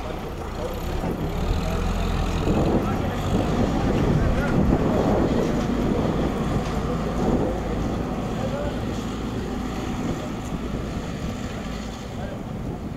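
Several voices of a group calling out to one another, loudest in the middle, over a steady low rumble of wind on the microphone.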